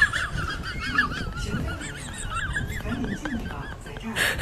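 A high-pitched, warbling sound effect whose pitch wobbles up and down rapidly and continuously, honk-like, fading a little near the end.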